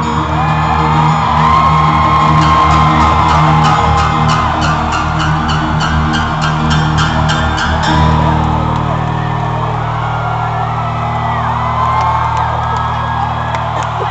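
Live pop music heard from the crowd in a large hall: a steady beat that drops out about eight seconds in, leaving sustained low chords, while fans whoop and scream over it.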